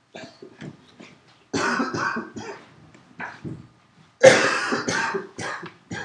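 A person coughing in two bouts of short coughs, the second bout, a little past halfway, the louder.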